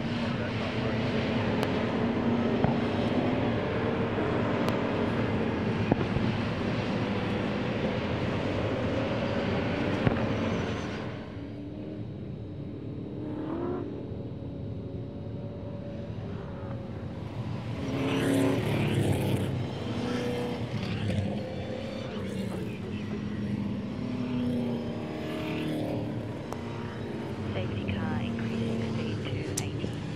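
A pack of V8 Supercars, Holden Commodores and Ford Falcons with 5.0-litre V8 engines, running in a line at safety-car pace on part throttle. The sound drops about eleven seconds in, then grows louder again from about eighteen seconds as cars pass close by.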